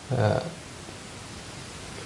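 A man's short hesitation sound, "uh", then a steady, even hiss of background noise.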